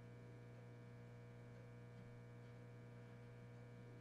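Near silence with a steady electrical hum.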